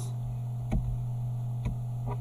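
Steady low electrical hum with two computer mouse clicks about a second apart.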